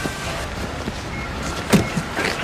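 A car door slamming shut once, sharply, near the end, over a steady street background.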